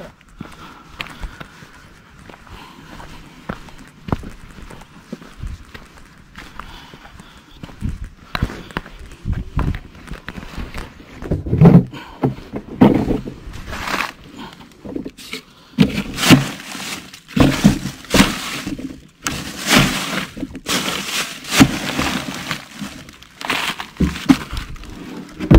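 Handling noises as a caught striped bass is put into a plastic cooler: a run of irregular knocks and thumps with some crinkling, quiet for the first third and loudest in the second half.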